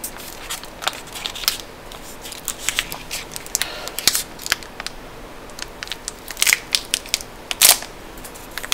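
Close-miked crinkling and crackling of plastic and foil candy-bar wrappers being handled and torn open, mixed with crunchy bites and chewing of chocolate bars. The sharp crackles come at irregular intervals, and the loudest come near the end as a KitKat Chunky is unwrapped.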